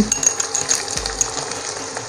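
Onions and whole spices frying in hot mustard oil in a nonstick kadai, a steady sizzle with scattered small crackles and ticks.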